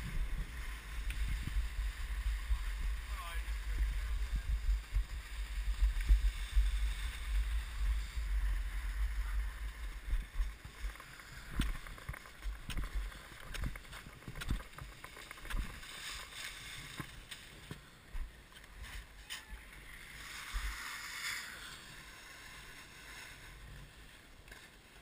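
Skis sliding down packed snow, with wind rumbling on the action camera's microphone for the first ten seconds or so. It then quietens as the skier comes to a stop, leaving scattered clicks and knocks of skis and poles.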